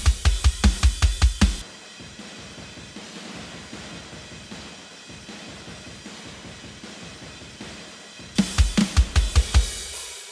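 Mjolnir Drums sampled metal drum kit playing a MIDI groove with fast kick-drum hits and cymbals. About a second and a half in, the close punch drops away into a soft, washy, distant room sound, which is the room-mics-only mix. About eight seconds in, the full punchy kit with its rapid kicks returns.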